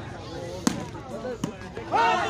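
Two sharp slaps of a volleyball struck by hand, about three-quarters of a second apart, over crowd chatter and shouting.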